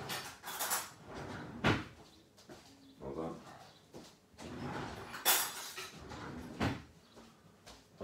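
Kitchen handling clatter: three sharp knocks of containers or utensils being picked up and set down, the loudest about five seconds in, with quieter shuffling and handling noise between them.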